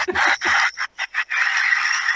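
A phone ringtone played for the group, thin and without any low end, running steadily from about a second and a half in. Over its first second or so a man laughs in short bursts.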